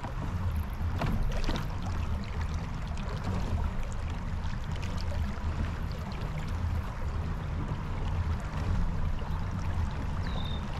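Water washing and splashing along the hull of a Jackson Kayak Bite FD pedal-drive kayak under way, over a steady low rumble, with a couple of light knocks about a second in.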